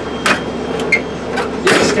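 Light clacks and knocks of a hand handling the steel drawers of a Snap-on tool box, a few separate taps with the loudest near the end.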